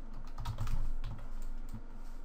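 Computer keyboard being typed on: a few irregularly spaced keystrokes as a formula is entered.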